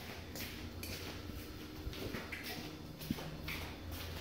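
Faint rustling and handling noise from a phone being moved and pressed against a front door, with a single small click about three seconds in.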